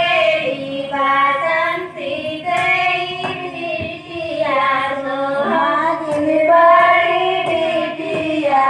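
A group of women singing a traditional wedding folk song together in drawn-out, sliding phrases, with a few short knocks under the singing.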